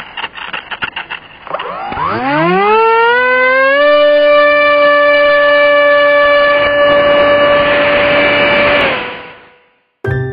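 A few short bursts of sound, then the electric motor and propeller of a Zohd Rebel GT model plane spooling up to full takeoff throttle. The whine rises steeply in pitch over about two seconds, holds steady, and fades out near the end.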